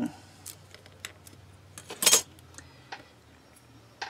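Scattered light clicks and taps of small objects being handled on a hard craft work surface, the loudest about two seconds in, as clay pieces are set down and moved.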